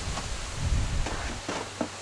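A few short clicks and knocks from a folding van bench seat as it is pushed back and its seat bottom swings down, with handling rustle under them.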